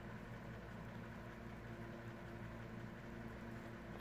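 Steady low background hum with a faint hiss, unchanging throughout; no distinct events.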